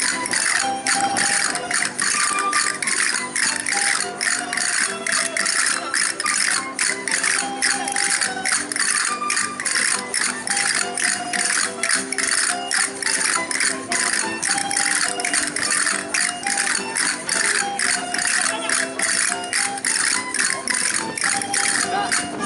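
Aragonese folk dance music with a plucked-string melody, and castanets clicking in a fast, steady rhythm over it.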